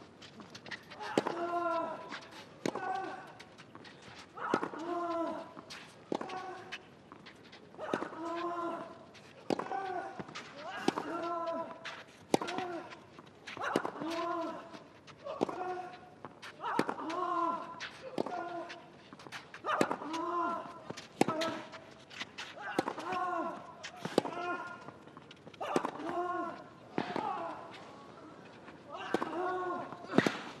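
Long tennis rally on a clay court: the ball is struck back and forth about every one and a half seconds, and most shots come with a player's short grunt that rises and falls in pitch.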